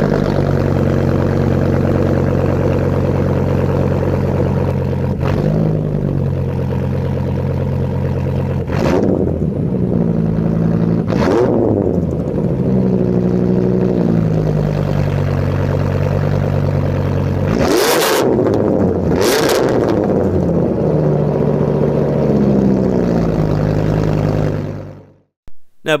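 Dodge Ram SRT-10's 8.3-litre Viper V10 heard at its twin exhaust tips: a steady idle broken by several short revs, the two strongest close together about two-thirds of the way through. It cuts off abruptly near the end.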